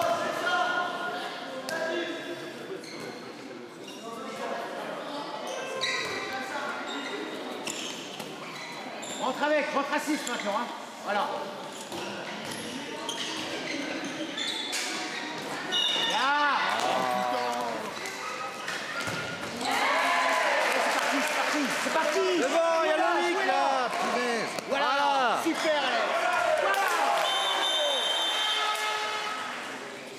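A handball bouncing on a wooden sports-hall floor as it is dribbled and played, the knocks echoing in the hall, with players' voices and other sharp pitched sounds on court, most of them in the second half.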